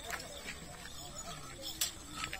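Hooves of a pair of bullocks stepping on a muddy dirt track as they pull a cart, a few knocks with a sharper one near the end, under background voices.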